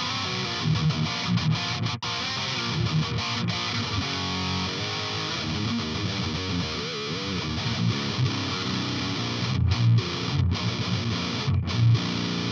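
Heavily distorted electric guitar played through the Otto Audio 1111 amp-sim plugin on a high-gain metal preset: rhythmic riffs on the low strings, with a brief break about two seconds in.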